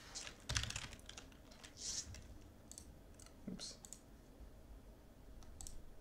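Faint, irregular tapping and clicking on a computer keyboard and mouse.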